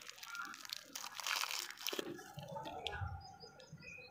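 Plastic-and-foil lollipop wrapper crinkling and crackling as it is pulled open by hand, densest in the first two seconds, then quieter.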